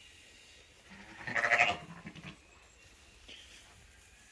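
A sheep bleats once, loudly, about a second in, the call lasting under a second.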